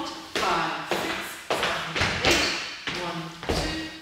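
Dance footsteps on a wooden floor: shoes stepping and tapping through a Lindy hop swing out, with sharp steps every half second or so. A voice calls out the count over them.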